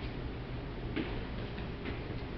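Steady low hum of a large room, with two faint clicks about a second apart.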